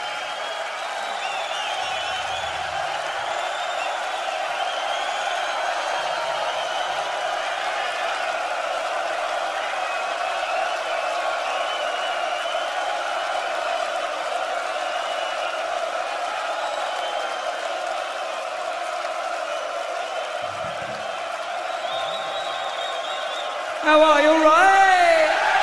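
Large concert crowd cheering and chanting, many voices together.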